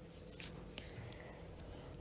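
Quiet room tone in a pause between narrated sentences, with one short, sharp mouth click or breath from the narrator about half a second in.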